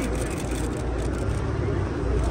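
A car's engine running close by, a steady low rumble, with indistinct voices and street noise over it.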